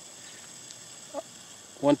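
A pause in a man's talk: faint steady outdoor background hiss, with one very brief faint sound about a second in, before his voice resumes near the end.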